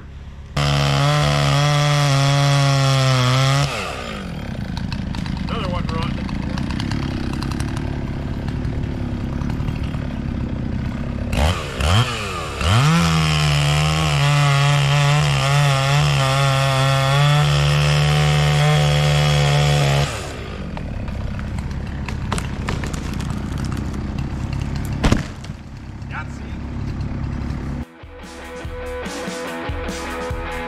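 Gasoline chainsaw felling a tree: the engine is held at a high, steady pitch at full throttle for about three seconds starting a second in, then again for about seven seconds in the middle, sliding down to a lower, rougher run in between and afterwards. A single sharp thump comes about five seconds before the end, and music takes over near the end.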